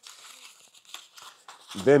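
Faint crinkling and rustling of packaging as a small wrapped part is handled and unwrapped. A man's voice begins near the end.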